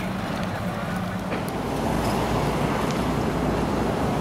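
Outdoor traffic noise: a steady low rumble and hiss that swells slightly after about two seconds, as of a vehicle going by.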